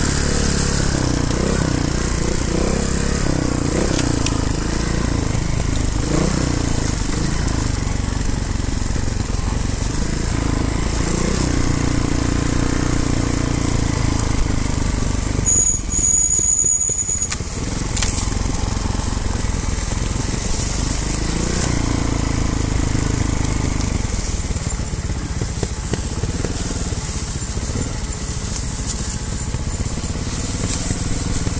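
Trials motorcycle engine running at low trail speed, the throttle opened and closed in short bursts so the engine note rises and falls, with the sound briefly dropping away about halfway through.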